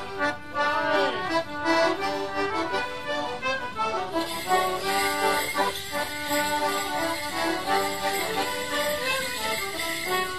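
Squeezeboxes (melodeon and concertina) playing a traditional English Morris dance tune. About four seconds in, the jingling of the dancers' leg bells joins the music as the dance begins.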